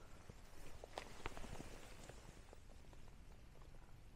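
Near quiet, with a few faint, soft clicks and knocks about a second in over a low, even background hush.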